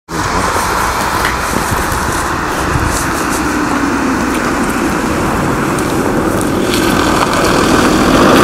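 A car's engine and tyres on a wet, slushy road, a steady noise that grows louder toward the end as the car approaches and slows to pull over.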